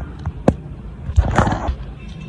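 A bolo knife striking the hard shell of a mature coconut: a sharp crack about half a second in, then a duller knock about a second later. The blows drive a crack along the shell past its second ridge line, splitting it open.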